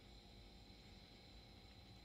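Near silence: faint room tone with a thin, steady high whine.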